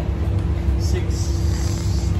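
Steady low rumble with a constant hum from a commercial kitchen's ventilation: the extraction hood's fan running.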